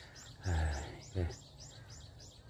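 A bird calling a quick run of high, arched chirps, about three a second. A man's voice makes two brief murmured hesitation sounds.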